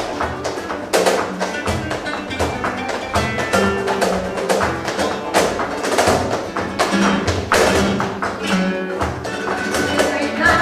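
Live flamenco-style ensemble music: plucked oud and guitar over frequent sharp hand claps (palmas).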